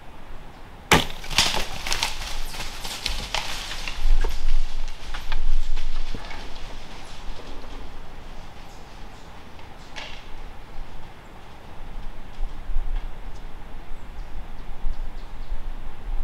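Handling noise close to the microphone: a sharp knock about a second in, followed by a run of clicks and knocks for a few seconds and a low rumble from about four to six seconds, then lighter rustling with a single click near ten seconds.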